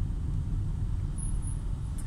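Steady low rumble of a car heard from inside the cabin, with no other event standing out.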